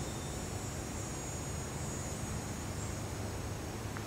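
A cicada buzzing in one steady, high-pitched drone over a constant background hiss.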